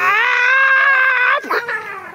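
A person's voice giving one loud, drawn-out squawking cry lasting about a second and a half, voiced as the sound of an angry duck.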